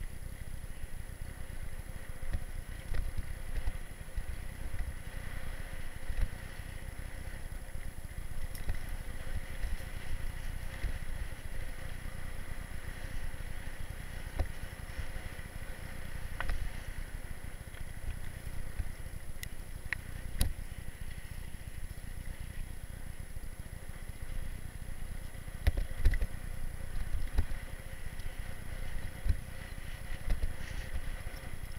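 Riding noise of a mountain bike on a rough dirt trail, recorded by a camera mounted on the bike: a steady low rumble with rattles and occasional sharp knocks as the bike goes over bumps.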